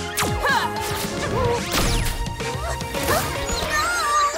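Cartoon action music with sound effects laid over it: a quick falling whoosh right at the start, then several sharp hits and swishes.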